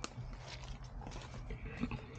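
Footsteps through leaf litter and undergrowth, with a few scattered crunches, over a low steady rumble.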